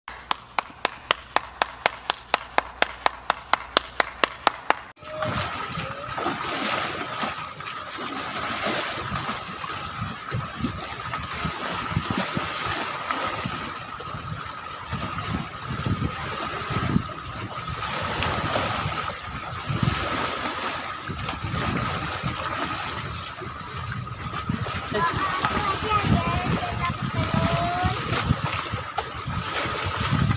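Small sea waves splashing and sloshing against the shore, in a continuous wash with irregular surges. The first five seconds are instead a rapid, evenly spaced run of clicks, about five a second, that cuts off suddenly.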